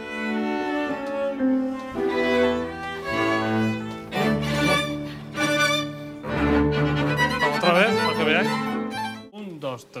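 Orchestra with bowed strings to the fore playing a rehearsal passage of sustained, changing notes, breaking off about nine seconds in.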